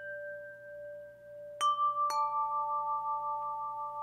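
Short musical logo sting of chime-like tones: a soft held tone, then two bell-like notes struck about half a second apart, the second lower, both ringing on.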